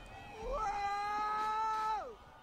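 A cat's long, drawn-out meow that rises in pitch about half a second in, holds one steady note and falls away at the end.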